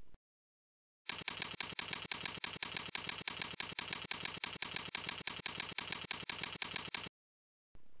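Computer keyboard typing: a fast, even run of key clicks, about eight a second, starting about a second in and stopping abruptly after about six seconds, as a one-line terminal command is typed.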